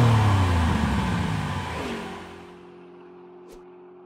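A car engine-rev sound effect with a whoosh, the revs falling away over the first two seconds, then a steady low hum of several held tones fading out, with two faint clicks near the end.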